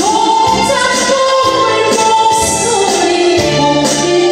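A woman singing a Korean song live into a microphone over a keyboard backing track, holding one long note for about the first second before moving on through the melody.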